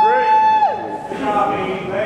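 An audience member's long, high-pitched cheering shout, held on one note and dropping off just under a second in, followed by shorter shouted cheers from the crowd.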